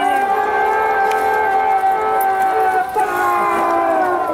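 Several voices singing a chant together in long held notes that slowly sink in pitch, with a short break about three seconds in before the next held note.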